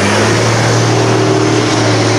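A heavy vehicle's engine running loud and close, holding a steady pitch, with a rushing noise around it.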